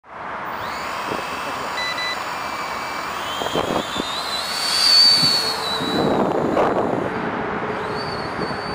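Syma X5C toy quadcopter's small electric motors and propellers spinning up, a thin whine rising in pitch to a peak about five seconds in, then falling away about a second later.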